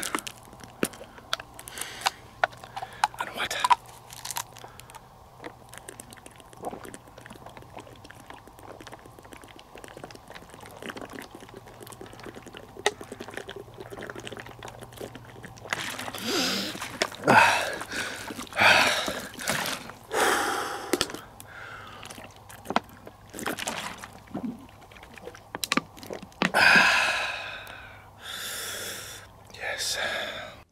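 A man drinking from a plastic water bottle: small clicks and crinkles from the bottle at first, then a run of loud gasps and breathy exhalations in the second half.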